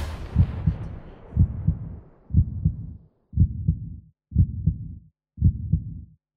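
Heartbeat sound effect: a low double thump, lub-dub, about once a second. Over the first two seconds it sits on the fading reverberant tail of a loud hit from just before.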